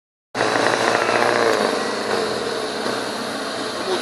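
Off-road 4x4 engine running hard under load as a vehicle stuck in a muddy water hole is driven and pulled. It is loudest for about the first second, then settles to a steadier run.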